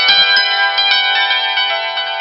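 Hammered dulcimer played with two hand-held hammers: a quick run of notes struck on its metal strings, each note ringing on under the next.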